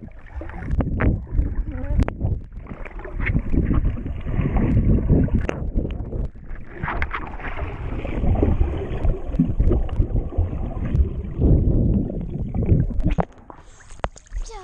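Muffled underwater water noise in a swimming pool: churning and bubbling from swimmers moving, with dull knocks against the camera, heard from a camera held below the surface. It drops away about a second before the end as the camera surfaces.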